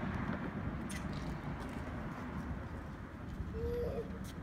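A dove cooing near the end: short, low, level hoots over a steady low outdoor rumble.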